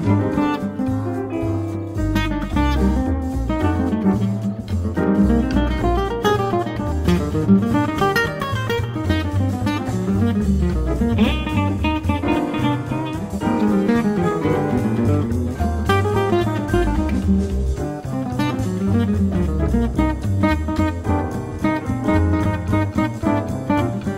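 Instrumental 1930s-style swing jazz, with guitar over a plucked bass line and light drums, playing steadily.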